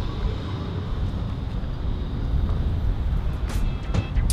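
Outdoor rumble of wind on the microphone mixed with parking-lot traffic: a steady low rumble that rises and falls, with a short click about three and a half seconds in.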